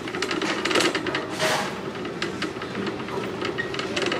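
Shopping cart rattling as it is pushed along a store floor: an irregular run of clicks and clatter over a steady rumble, with a short burst of hiss about a second and a half in.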